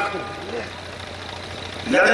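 A short pause in a man's amplified speech: his last word trails off, leaving a steady low hum and faint background noise, and the speech starts again at the very end.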